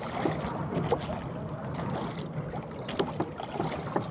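Wind on the microphone and sea water moving around a small outrigger fishing boat, with a steady low rumble and a few sharp knocks, about a second in and near three seconds in, as the handline is hauled.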